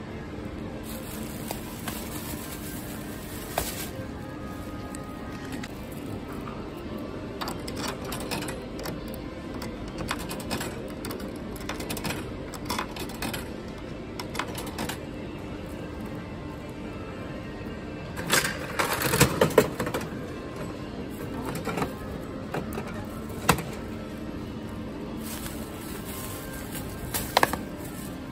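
Background music over the clicks and rattles of a coin-operated capsule-toy (gacha) machine: coins going into the slot and the handle being worked. There is a burst of louder clicking about two-thirds of the way through and a single sharp click near the end.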